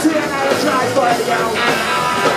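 A live rockabilly trio playing loudly and steadily: hollow-body electric guitar, upright double bass and drums.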